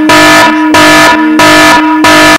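Air horn sound effect blasting in a string of loud, distorted blasts, each about half a second long with short breaks between them.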